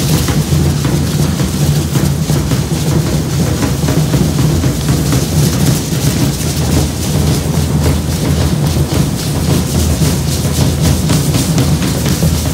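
Drums beating a steady, fast matachines dance rhythm, deep low beats with a crisp clatter over them, loud and unbroken.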